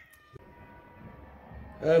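A man's drawn-out "um" near the end, breaking into a laugh, over faint sustained background music notes.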